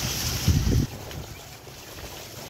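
Water spilling and splashing from a turning water wheel, with wind buffeting the microphone; a loud low gust about half a second in, after which the sound drops quieter and duller.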